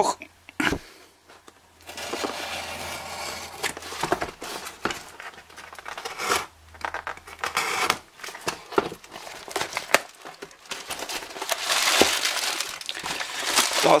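A cardboard parcel being unpacked: packing tape cut and torn with a utility knife, then paper packing rustled and crumpled as the contents are pulled out. The rustling is loudest near the end.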